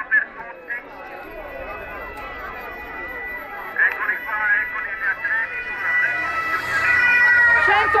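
Roadside crowd chattering while a steady high siren tone from the approaching lead motorcycles of the race escort grows louder toward the end.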